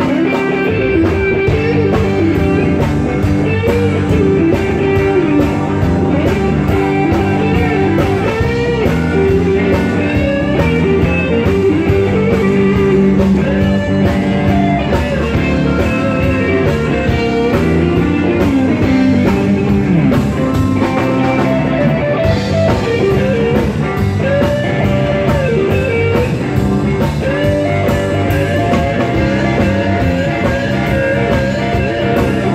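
Live blues-rock band jam: electric guitars play lead lines with string bends over bass guitar and a steady drum beat.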